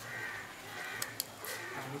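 A bird calling three times in quick succession, short raspy calls.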